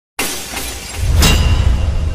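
Glass-shattering sound effect: a sudden crash of breaking glass, a second sharp burst about a second in, and a deep rumble underneath that starts fading near the end.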